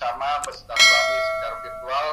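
A short click, then a bright bell ding a moment later that rings on for about a second and fades: the notification-bell sound effect of a subscribe-button animation.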